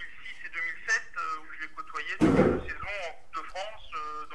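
People talking, with one loud, short thump a little over two seconds in.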